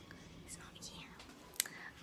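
A person whispering faintly, with one short click about a second and a half in.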